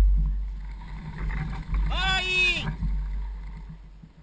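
A low rumble that fades steadily as the movement slows to a stop. About two seconds in, a single short, high-pitched voice-like call with a falling pitch.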